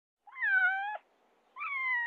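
A cat meowing twice, each meow about three quarters of a second long.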